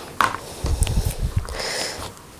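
Linen fabric being handled and gathered up on a cutting table: a light tap a moment in, then soft dull rubbing and bumps.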